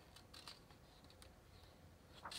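Faint, brief scratchy rustles of a hand brushing the glossy paper of a catalog, about half a second in, followed by a single small tick a little after a second.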